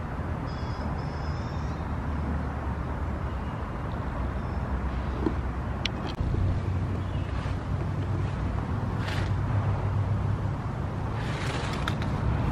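Outdoor ambience: a steady low rumble of distant road traffic, growing a little louder about halfway through, with a few short high chirps near the start.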